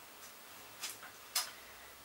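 Two short, light clicks about half a second apart, the second louder, from a large hardcover book being handled and set down.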